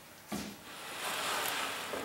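A large tyre on its wheel is turned around where it stands on a wooden workbench: a short bump, then about a second of rubber tread scraping across the bench top.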